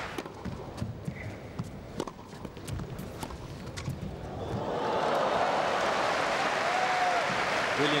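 Tennis rally on an indoor court: sharp racket strikes on the ball for about four seconds. Then, after a winning Federer backhand, the crowd breaks into applause and cheering that swells and holds.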